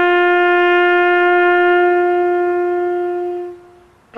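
A horn blowing one long, steady note that fades away about three and a half seconds in.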